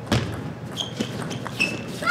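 Table tennis rally: the plastic ball struck by rubber-faced paddles and bouncing on the table, a heavier knock just after the start and a few sharp clicks about a second in, with short high squeaks of shoes on the court floor.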